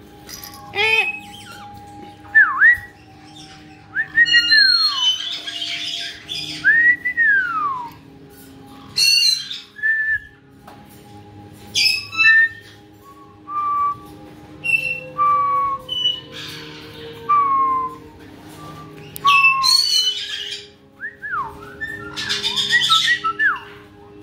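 Pet caique parrots whistling, a string of separate calls that mostly glide downward, mixed with short chirps and a few harsh squawks.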